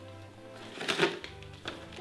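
Quiet background music, with a few short paper rustles and a crinkle about a second in as a small child pulls a wrapped candy bar out of a torn paper-covered box.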